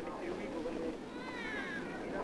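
A small child crying: a high, wavering wail that rises and falls, strongest in the second half, over a faint crowd hubbub.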